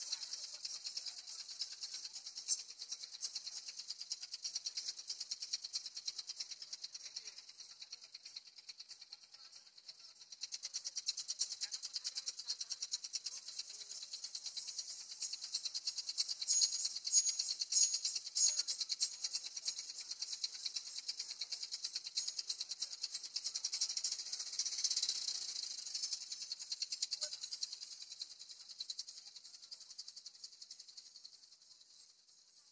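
Fast, continuous high-pitched rattling, getting louder about ten seconds in.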